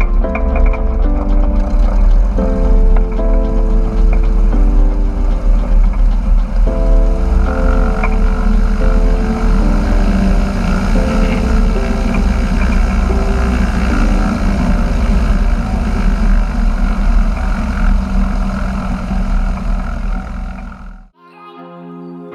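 Background music over the steady drone of a Cessna 172 Hawk XP's engine and propeller as the plane rolls along a grass runway. The engine sound and music cut off abruptly about a second before the end, then softer music starts.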